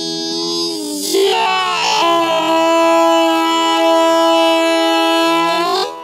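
Isolated studio vocals holding the song's long final note, shifting pitch about a second in, then sustained steadily and cut off just before the end with a short reverb tail.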